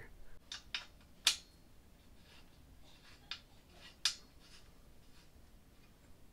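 A handful of short, sharp metal clicks and clinks from the crib's wire mattress-support frame being handled, the loudest about a second in and another about four seconds in.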